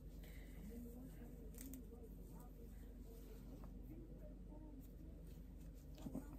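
Very quiet room tone with a faint low voice humming or murmuring at intervals, and light rustling and clicks as a synthetic wig is handled and pulled on.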